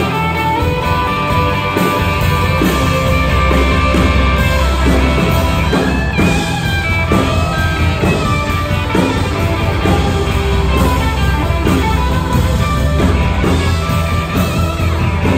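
Live rock band playing an instrumental stretch, led by a Stratocaster-style electric guitar playing sustained, wavering lead lines through a small combo amp over a steady bass-heavy backing.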